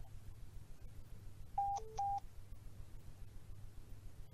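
Short electronic beeps from an iPhone: three brief tones in quick succession, high, low, then high again, about a second and a half in, as a call is being placed. A faint low hum runs underneath.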